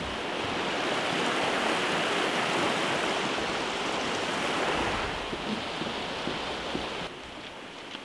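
Mountain creek rushing steadily as one even wash of water noise, thinning after about five seconds and falling away near the end.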